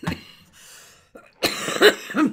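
A woman coughing: one harsh cough in the second half, loudest just before the end.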